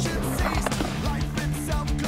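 Skateboard wheels rolling on a concrete bowl, under a rock song with guitar and a steady beat.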